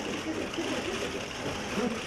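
Indistinct voices talking over a steady hiss of room noise, with no word clear enough to make out.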